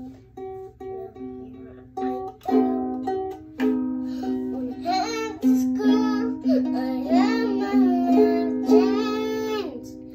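A child strumming a ukulele in a slow, even beat, then singing over it in long, drawn-out notes from about halfway in.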